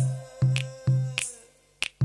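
Background music with a sparse beat of sharp snap-like clicks over low bass notes and a held tone that slides down, dropping away briefly near the end.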